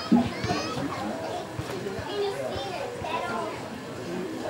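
Children's voices and other people's chatter, with no music playing.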